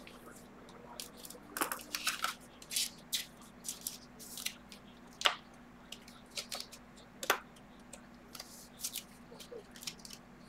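A trading card being handled and slid into a rigid plastic card holder: scattered short plastic clicks, scrapes and rustles, with the two sharpest clicks about five and seven seconds in.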